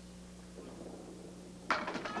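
A candlepin ball rolls down the lane with a faint rumble that grows louder, then, about 1.7 seconds in, hits the deadwood and standing pins with a sudden clatter of wooden pins.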